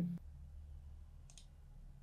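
One faint click of a computer mouse button about a second and a half in, over low room tone.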